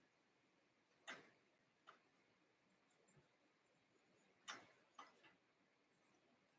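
Near silence with a few faint ticks of a marker pen tip against paper as small words are written, the clearest about a second in and again past four seconds.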